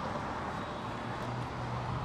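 Steady outdoor background noise with a faint low hum throughout and no distinct event.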